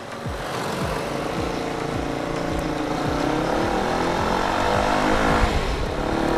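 Sport motorcycle engine pulling steadily in gear, its note slowly rising for about five seconds and then easing off near the end, under a steady rush of wind noise on the microphone.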